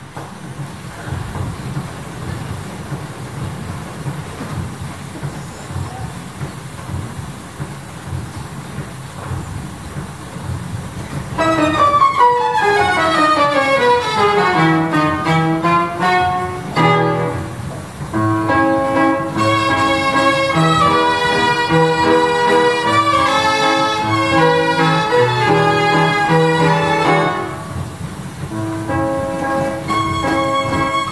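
Hupfeld Phonoliszt-Violina, a roll-played piano with self-bowed violins. For about the first eleven seconds only a steady low running noise of its mechanism is heard. Then the violins and piano start playing, opening with a quick descending run and going into a tune.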